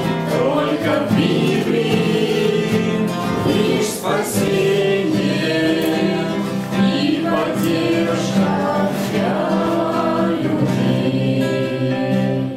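A small group of voices singing a church hymn together, holding long sustained notes.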